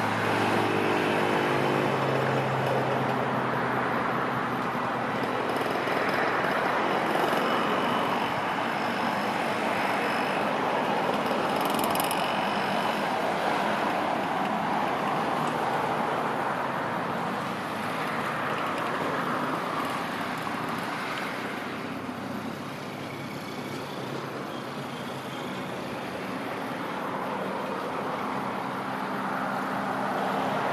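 Pacific-type (4-6-2) steam locomotive drifting slowly into a station with its cylinder drain cocks open, giving a steady loud hiss of escaping steam.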